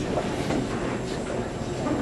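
Steady background hiss and rumble of room noise, even and unchanging, in a pause between spoken sentences.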